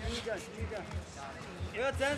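Faint arena sound from a mixed martial arts bout: distant shouted voices over short, dull low thuds about three a second.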